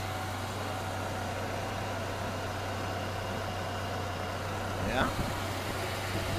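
1998 Ford Ranger's 2.5-litre eight-spark-plug four-cylinder engine idling steadily with the hood open, running sweet: an even hum with no change in speed.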